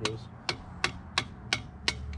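Hammer striking a steel rod set on a hydrant's push pin to drive it out: six sharp, evenly paced strikes, about three a second.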